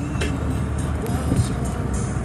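Car cabin noise while driving: a steady low rumble of road and engine noise heard from inside the moving car.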